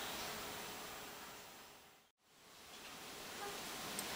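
Steady background hiss of room and microphone noise that fades down to a brief total silence about halfway through, then fades back up: the join of an edit between two recordings.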